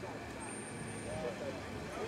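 Faint outdoor background in a pause in the talking: low murmur of onlookers' voices and distant vehicle noise, with a thin, high, faint tone from about half a second in to just past one second.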